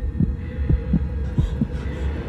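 Suspense film underscore: a steady low drone with a heartbeat-like double pulse repeating about every three-quarters of a second.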